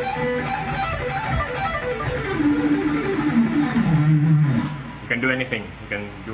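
Charvel electric guitar playing a fast pentatonic run of repeating scale-fragment patterns, descending in pitch through the middle and ending about three-quarters of the way in.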